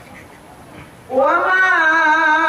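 Male Qur'an reciter's voice through a PA, entering about a second in with an upward slide into a long, held, slightly wavering note of melodic tilawah.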